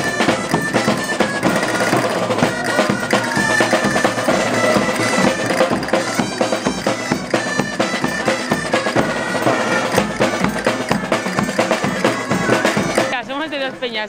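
A street band of gaiteros playing a parade march: loud, reedy folk pipes over snare and bass drums. The music cuts off about a second before the end, and talk takes over.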